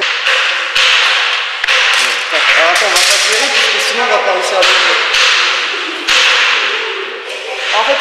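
Woodworking noise on a wooden game frame: a run of sudden, noisy strokes, roughly one a second, each fading before the next, with voices faint underneath.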